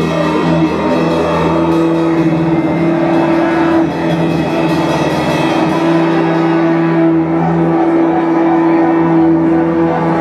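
Live instrumental rock band playing loudly: drum kit with long, droning held notes from guitar and bass. The cymbal wash drops away about seven seconds in while the held notes go on.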